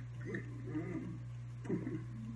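A man's short wordless hums whose pitch rises and falls, over a steady low hum.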